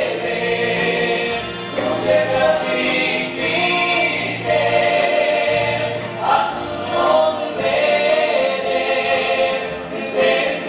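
A vocal group singing a Romanian Christian song in harmony, with long held notes and no break.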